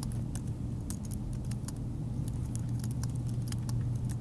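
Typing on a low-profile Apple aluminium keyboard: quick, irregular key clicks, several a second, over a steady low hum.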